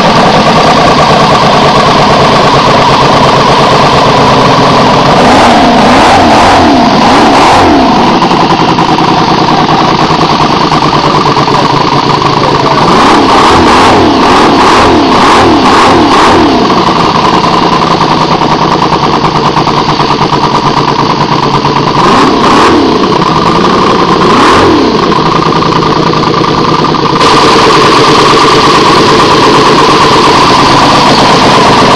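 Miniature V8 model engine running loudly, its revs rising and falling in quick throttle blips in three spells, about five, thirteen and twenty-two seconds in, settling back to a steady run between them.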